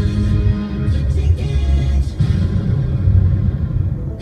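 Music with a heavy, steady bass line, playing on the radio in a break between commercials.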